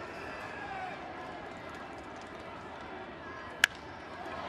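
Ballpark crowd noise, then a single sharp crack of a wooden baseball bat hitting a pitched ball near the end.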